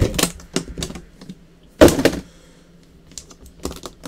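Handling of latched metal briefcase-style trading-card box cases: a run of light clicks and taps, with one louder knock about two seconds in.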